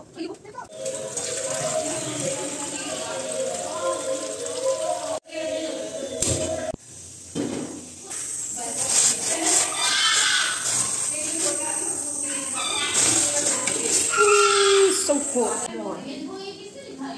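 Background music with a singing voice.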